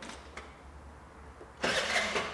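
Small clicks of a key in a Vespa scooter's ignition, then about a second and a half in, a short burst of the electric starter cranking without the engine catching. The key has been programmed out of the immobilizer, which blocks the start.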